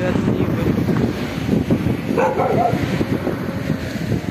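A dog's short bark about two seconds in, over steady wind noise on the microphone.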